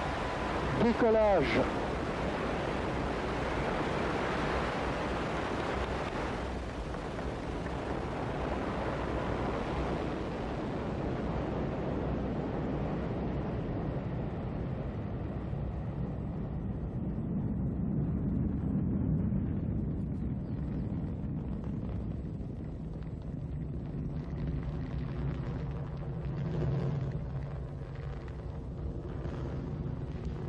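Ariane 5 flight 501 rocket climbing away after liftoff: a steady, broad roar of its engines and boosters whose hiss fades as it recedes, leaving a low rumble. A short falling swoosh sound effect cuts in about a second in.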